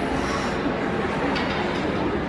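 Steady rumbling background noise of an indoor ice arena, with faint voices.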